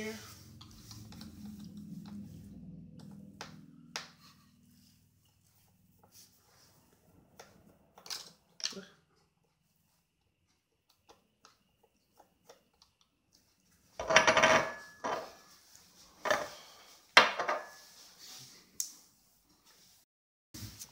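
Small cross-head screws being worked out of a laptop screen's mounting frame with a hand screwdriver: faint scattered ticks and clicks at first. From about fourteen seconds in come several loud metal clinks and rattles.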